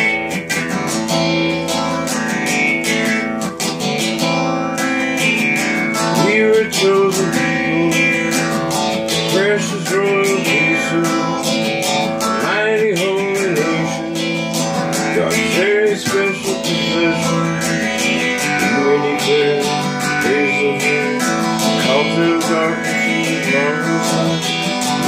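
Acoustic-electric guitar strummed continuously, chord after chord in an even, steady rhythm.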